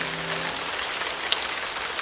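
Steady rain-like hiss with scattered small patters and crackles, with a brief sharper crackle a little past halfway. The last held notes of the music die away about a quarter of the way in.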